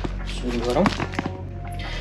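A person's voice over background music, with a couple of light clicks.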